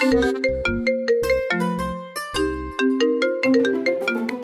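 Mobile phone ringtone playing a melodic tune of quick, pitched notes over a pulsing bass line. It starts suddenly and the call is then answered.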